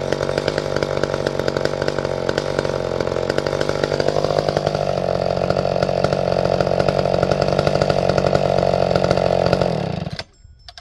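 McCulloch Pro Mac 1010 two-stroke chainsaw engine running without cutting. Its pitch rises slightly about four seconds in, and the engine shuts off abruptly near the end.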